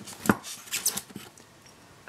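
Handling noise from a plastic power-supply brick, its cord and the box's foam packing: a few sharp clicks and knocks, the loudest about a quarter-second in, with a brief crinkly rustle just before the one-second mark.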